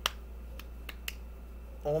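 A sharp click at the start, then three more quick clicks about half a second to a second in, over a steady low hum; a man's voice begins near the end.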